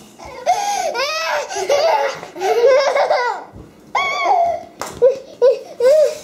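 A toddler squealing and laughing in a string of high-pitched bursts.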